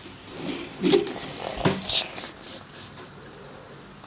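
Plastic Lego pieces clicking and rubbing as the Batmobile model's movable parts are handled. There are a few light clicks in the first two seconds, and then it goes quiet.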